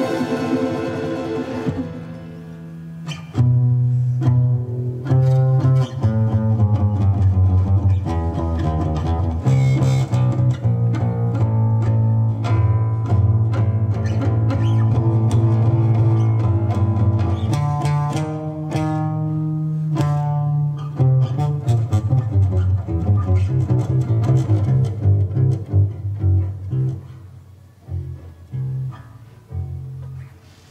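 Contrabass balalaika playing a plucked line of deep notes over a Russian folk-instrument orchestra. The music thins to quieter, separate notes near the end.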